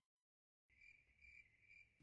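Near silence, then from under a second in a faint, steady, high-pitched pulsing chirp of a cricket.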